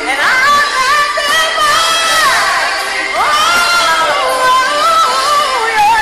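Gospel worship music with a voice singing long, drawn-out notes, sliding up into a new phrase twice.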